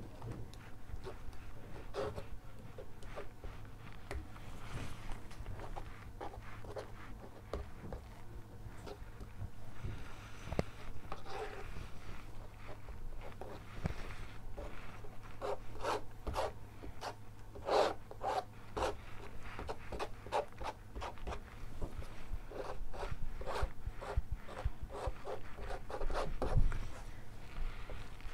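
Plastic spreader scraping and smearing wet acrylic paint across a stretched canvas in short, irregular strokes, which come faster and louder in the second half.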